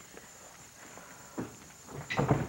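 Footsteps of people walking into a room, with a soft thud about a second and a half in.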